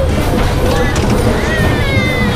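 Bumper car ride in motion: a loud, steady low rumble with voices over it.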